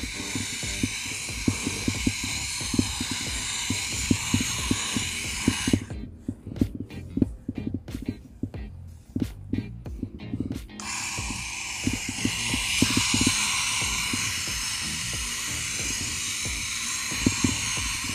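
Hose-end sprayer's flat fan nozzle hissing as it sprays water mixed with liquid soil loosener onto the grass. It shuts off about six seconds in and comes back on about five seconds later. Low irregular thuds run underneath.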